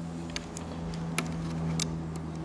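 A few small, sharp metallic clicks from the winding crank of a Bolex cine camera's spring motor as it is handled and locked into place, over a steady low hum.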